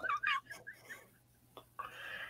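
A man's high-pitched, squeaky giggle that wavers and dies away in the first half second, followed by faint breathy chuckles and a short breathy laugh near the end.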